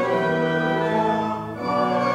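Church organ playing slow, held chords that change every second or so.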